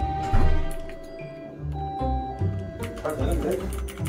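Electronic two-note doorbell chime, high then low, ringing over and over about every two seconds over background music with a bass line.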